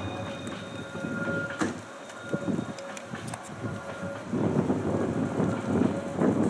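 Distant metre-gauge Mallet steam tank locomotive (0-6-6-0) working along the valley, its exhaust beats coming and going as low thuds that grow stronger in the last second or two.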